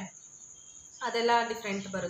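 A short pause in a woman's talk, with a steady high-pitched tone running under it; she starts speaking again about a second in.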